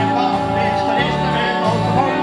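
Live band music with a bass line that changes note about a second in, under held melody notes.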